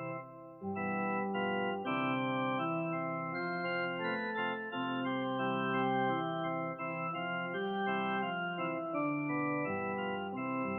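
Organ playing sustained chords under a melody line, coming in about half a second in after a short pause; it is the instrumental lead-in to a congregational worship song.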